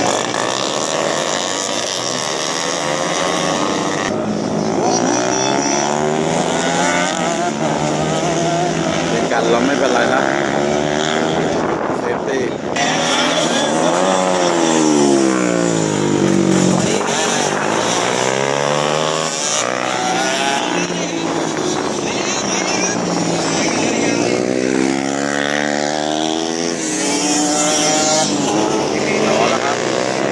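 Several 150 cc race motorcycles, a mix of two-strokes and four-strokes, running hard through a tight corner. Their engines overlap, each one's pitch falling as it slows into the turn and rising as it accelerates out, with one bike's deep drop and climb about halfway through.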